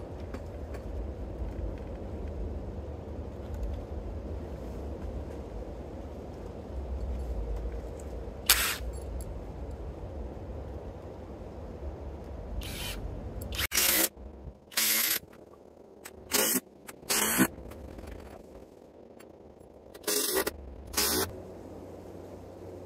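Cordless driver sinking six-inch HeadLok timber screws into a white oak beam, running in short bursts: one about eight seconds in, then a cluster of about seven through the second half. A low rumble runs under the first half or so.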